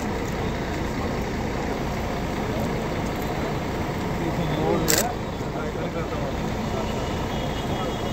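Steady outdoor background noise of running vehicle engines mixed with indistinct voices, with one sharp click about five seconds in.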